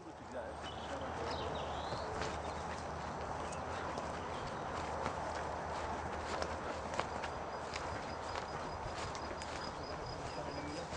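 Steady outdoor background noise with scattered light clicks and ticks through it.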